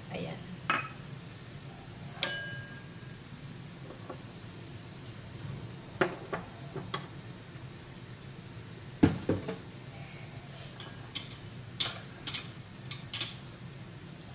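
Small stainless steel ramekins being handled and set down on the countertop: scattered metallic clinks and knocks, a few with a short ring, the loudest about nine seconds in and a quick run of them near the end.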